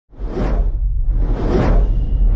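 Logo-intro sound design: two whoosh sweeps, about a second apart, over a steady deep bass rumble.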